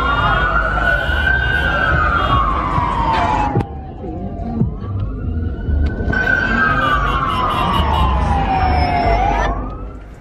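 Police car siren wailing: each cycle rises quickly in pitch and then falls slowly, about two full cycles, with a third rise starting near the end. Steady low background noise sits underneath.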